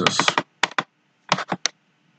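Computer keyboard keys clicking: about six keystrokes in two small groups, two together and then a quick run of four.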